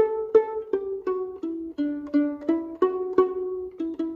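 Violin pizzicato: a run of about a dozen plucked notes, roughly three a second, each vibrated with the left hand so that it rings on. The line steps down in pitch and back up, and the last note is left to ring and fade.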